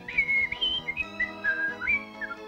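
A cartoon character whistling a short tune of about six held notes. The notes mostly step downward, then rise again near the end, over light background music.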